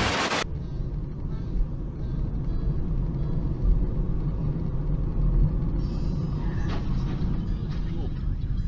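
A short burst of static hiss at the very start, then the steady low rumble of engine and road noise from a car driving along a city road, picked up by its dashcam.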